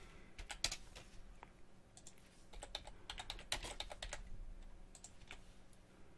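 Computer keyboard typing: irregular, fairly faint keystrokes in short runs separated by brief pauses.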